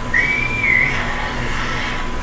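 A single short whistled note, high and held for under a second, gliding slightly upward before it breaks off, over a low steady rumble.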